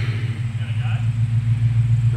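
Nissan Patrol Y62's V8 petrol engine idling steadily, a constant low hum.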